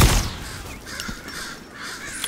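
A single revolver gunshot right at the start, loud and sharp, fading away over about half a second. Crows cawing follow behind it.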